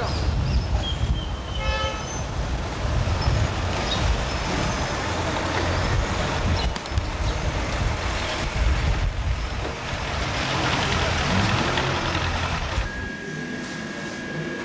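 Street traffic: cars and taxis running past with a steady rumble, and a short horn toot about two seconds in. Near the end the traffic noise drops away to a quieter room with a faint steady high tone.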